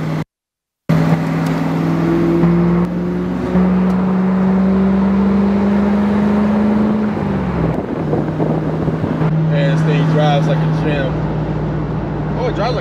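2002 Camaro SS's LS1 V8 pulling on the highway, with wind and road noise in the open convertible cabin. Its note climbs slowly for several seconds, drops quickly a little past halfway, then settles into a steady cruise. The sound cuts out for about half a second near the start.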